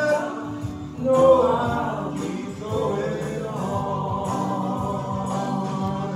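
A man singing a gospel song into a microphone over a steady instrumental backing. The loudest swell comes about a second in, and he holds long notes in the second half.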